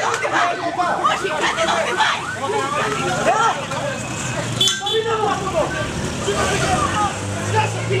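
Crowd of protesters shouting over one another at riot police, with a motorcycle engine running low in the background, louder near the end.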